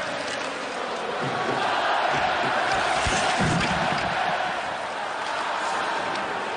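Hockey arena crowd, a steady noise of many voices during play.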